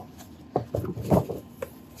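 Laminated paper sheets being handled: a few short, scattered rustles and taps.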